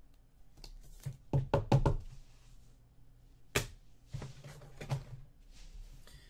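Trading cards being handled and set down on a desk: a quick cluster of four or five knocks about a second in, one sharp click midway, then a few lighter taps.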